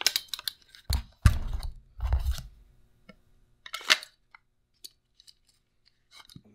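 A bayonet being gripped and tugged in its scabbard to test its retention: a few dull thuds of handling in the first couple of seconds, then a sharp click a little before four seconds in and some faint ticks.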